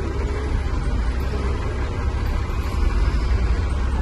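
Truck engine running, heard from inside the cab as a steady low rumble.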